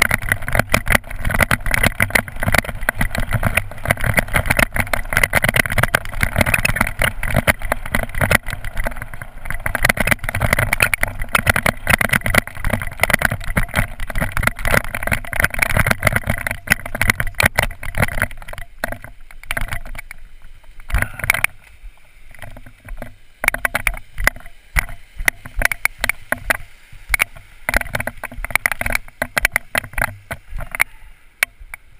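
Mountain bike rolling fast down a loose rocky gravel track: a constant rushing noise with rapid rattling and clattering of tyres, chain and frame over the stones. About two-thirds of the way through it slows, and the sound thins to scattered knocks and rattles.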